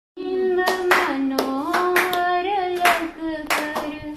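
A devotional song sung by a single voice, with hand-clapping keeping time. It starts abruptly right at the beginning, out of silence.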